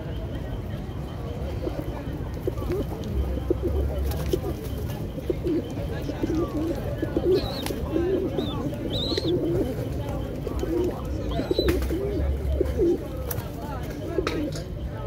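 A flock of pigeons (rock pigeons) cooing, with many low coos overlapping and repeating from a few seconds in until near the end.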